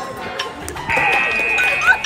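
Teenage girls laughing loudly and shrieking, with one high-pitched squeal held for about a second in the middle.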